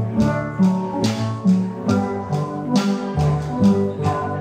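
Steel drum orchestra playing: many steelpans struck with sticks give a bright, ringing melody and chords over bass pan notes, with a steady percussion beat about twice a second.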